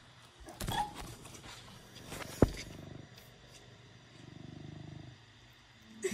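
A pet cat purring faintly, in spells, with one sharp click about two and a half seconds in.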